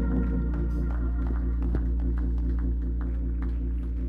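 Organ holding steady sustained chords, with a deep bass underneath.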